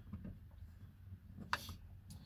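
Faint clicks of a drill bit on a screw and the plastic door-handle bracket while the screw is being set, with one sharper click about one and a half seconds in. No drill motor is heard running.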